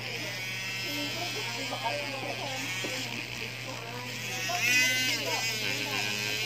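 Small handheld rotary tool spinning a felt buffing wheel against a cured carbon-fiber resin surface: a steady high motor whine over a low hum, wavering in pitch as the wheel works, most markedly about five seconds in.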